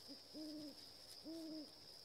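An owl hooting twice, two short low hoots about a second apart, over a steady high-pitched insect trill.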